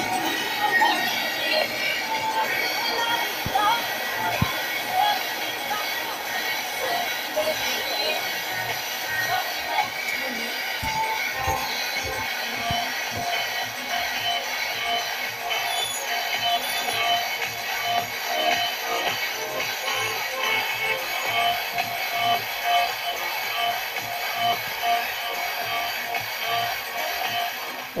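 Distant FM broadcast station, about 100 km away, playing music with voices through a Philips car cassette radio tuned to 91.6 MHz; the weak signal is fading on the analogue receiver.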